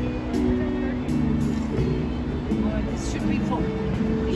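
Orchestral music playing a melody of held notes, with voices of people around.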